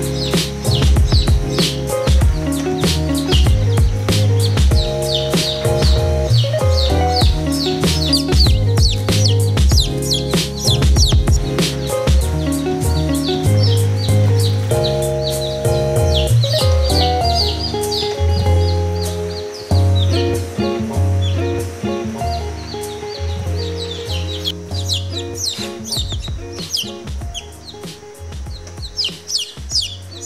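Background music with newly hatched chicks peeping over it, many quick high peeps throughout. The music grows quieter in the last third.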